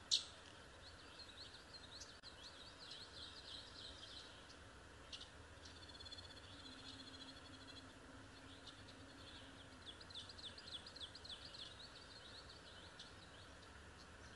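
Faint birdsong: runs of quick, high chirps, several a second, over a steady background hiss. A single sharp click comes right at the start.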